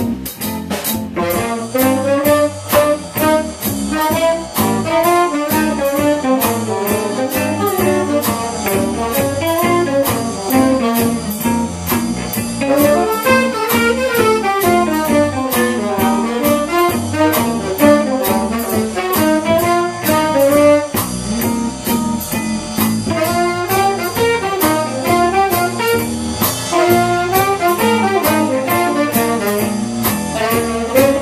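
Small jazz combo playing an up-tempo swing tune: tenor saxophone blowing fast running lines that climb and fall, over plucked mandolin-type strings and a drum kit keeping a steady beat.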